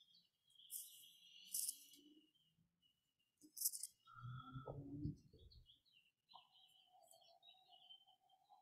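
Near silence on a video call, with a few faint, short high-pitched chirps and hisses and a faint held tone from about six seconds in.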